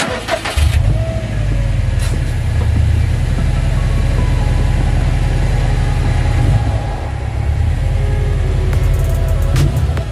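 A Subaru WRX STI's turbocharged 2.5-litre flat-four engine is cranked and catches about half a second in, then settles into a steady, deep idle. Music plays over it.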